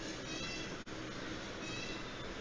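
Faint, high-pitched animal calls in the background, one near the start and another near the end, over low background noise, with a momentary dropout just under a second in.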